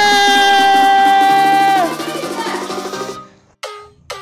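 Electronic dance music. A loud synth note is held for about two seconds and then slides down, a softer beat follows, and the track drops out briefly about three seconds in.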